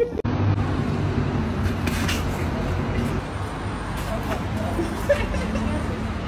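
Steady low rumble of a moving vehicle and its road noise, with faint voices underneath.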